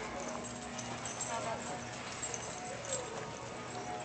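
Dogs giving a few short whining cries that bend in pitch, over steady background music.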